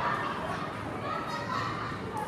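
Several women's voices shouting and calling across a football pitch, overlapping and indistinct.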